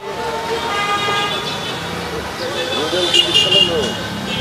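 Busy street traffic with vehicle horns: a long horn sounds in the first half and a higher one near the end, over a steady traffic hubbub with faint voices.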